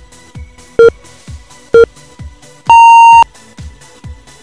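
Workout interval timer's countdown beeps: two short, lower beeps about a second apart, then one longer, higher beep marking the end of the work interval. They play over electronic dance music with a steady kick-drum beat.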